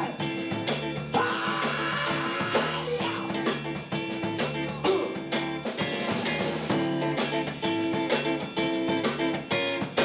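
Live band playing an instrumental groove: electric guitar over electric bass and a drum kit keeping a steady beat.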